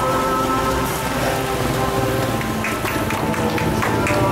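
Steady rain patter, with music of held, sustained notes over it.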